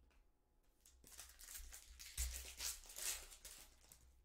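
Foil wrapper of a Topps Chrome card pack being crinkled and torn open by hand: a few seconds of crackling from about a second in, with a soft bump partway through.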